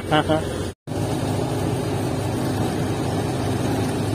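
Tractor diesel engine running steadily. The sound drops out briefly just under a second in.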